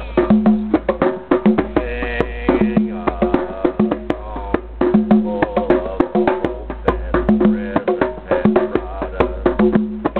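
Hand drums, a djembe and a conga, played with bare hands in a fast, dense rhythm of many strokes a second, with deep bass tones recurring about once a second under the sharper slaps.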